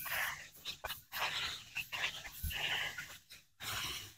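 Garden hose spray nozzle squeezed on and off, spraying water into a small bird-bath dish in several short, irregular hissing bursts to flush out fallen leaves.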